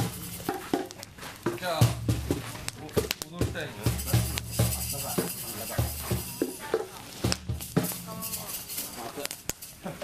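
Voices of several people talking and calling out, with scattered short sharp cracks and a brighter hiss in the middle.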